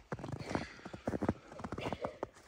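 Footsteps crunching through fresh snow: a quick run of walking steps, one every few tenths of a second.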